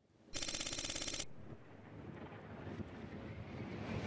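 A rapid rattling burst about a second long, then a rushing whoosh that grows steadily louder as a falling projectile comes in.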